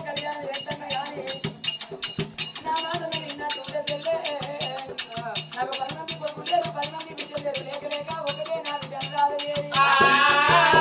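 Telugu Oggu Katha folk music: a singing voice over a barrel drum and a fast, steady rattling percussion beat, heard through a PA. Near the end a louder voice comes in.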